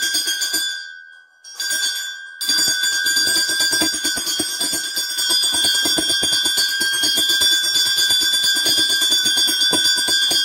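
A bell rung continuously in worship at a Shiva shrine, rapid clapper strikes over a steady ringing tone. The ringing fades out about a second in and comes back abruptly about two and a half seconds in.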